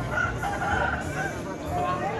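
An ekor lidi rooster crowing, with people talking in the background.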